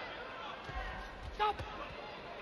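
Dull thuds of gloved punches and the boxers' footwork on the ring canvas, several in quick succession, over voices in a large arena. A short sharp sound about one and a half seconds in is the loudest moment.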